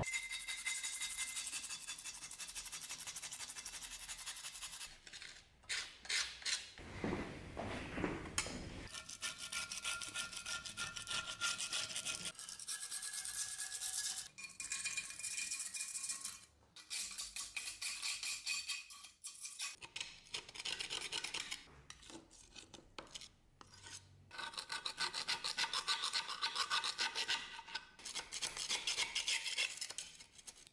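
A knife blade scraping caked grease and dirt off the metal slide of an old vise, in quick repeated strokes that come in several stretches with short breaks.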